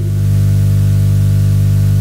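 Steady electrical mains hum, loud on the recording, made of a low buzz and its evenly spaced overtones, with a faint hiss over it.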